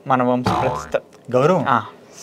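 Speech only: a man's voice speaking in short phrases, with a strained, breathy stretch about half a second in.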